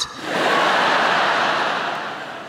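Large theatre audience laughing together after a punchline: a dense wash of laughter that swells about a third of a second in, holds, and starts to fade near the end.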